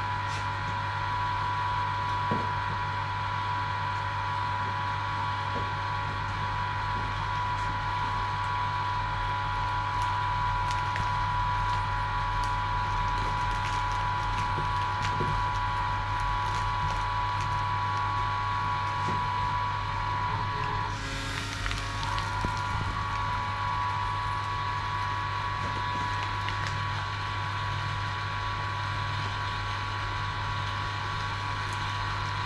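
Electric vacuum pump running steadily, a constant hum with a high whine, holding vacuum on a bagged carbon fibre resin-infusion layup. Faint crinkles of the plastic bagging film are pressed by hand, with a short noisier burst about two-thirds of the way through.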